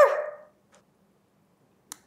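The tail of a short bark-like yelp fading out in the first half second, then near silence with a brief click just before the end.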